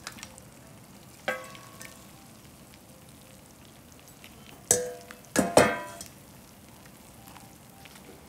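Hot pot broth simmering with a steady low hiss, while noodles are added and a stainless steel bowl clanks against the pot. There is one ringing clank about a second in, then a few louder ringing clanks around five seconds in.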